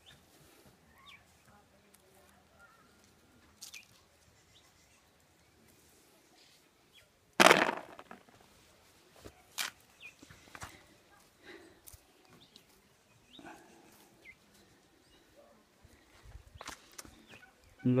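Scattered footsteps, clicks and knocks on stony ground as fallen green jocotes are gathered by hand among loose rocks. The sounds are sparse against a quiet background, with one much louder sharp knock a little under halfway through.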